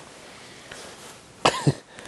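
Faint room hiss, then about one and a half seconds in a man gives a short cough in two quick bursts.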